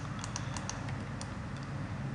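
Computer keyboard keys clicking a few times, mostly in the first second, over a steady low hum.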